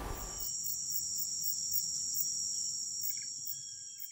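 Insects trilling outdoors: a steady, high-pitched drone holding at an even level.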